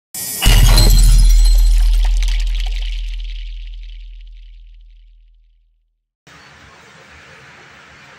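Intro logo sound effect: a sudden loud crash with shattering, glass-like crackle over a deep boom that fades away over about five seconds. After a short silence, faint steady room noise comes in near the end.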